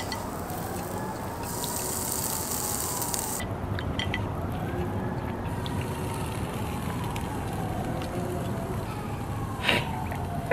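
Emergency-vehicle siren wailing, its pitch slowly rising and falling, over steady outdoor background noise, with a few light clicks.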